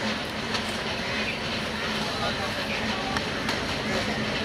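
WDM-3A Alco diesel locomotive approaching at low speed, its engine giving a steady low hum under the general rumble of the train, mixed with scattered voices of people by the line.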